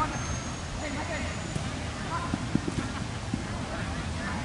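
Outdoor football-pitch ambience: faint shouts of players over a steady low background rumble, with one sharp thud about two and a half seconds in.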